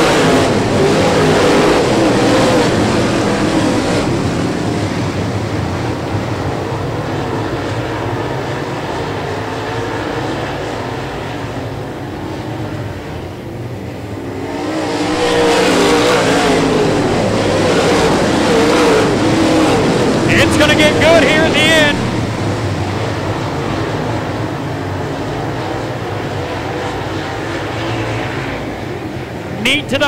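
Dirt super late model race cars' V8 engines running hard as the pack slides through a turn, the sound rising and falling as cars come past, dipping briefly and swelling again about halfway through.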